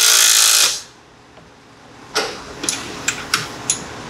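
Cordless drill running briefly, driving a seat belt mounting bolt tight, and stopping under a second in. A few light metal clicks and knocks follow.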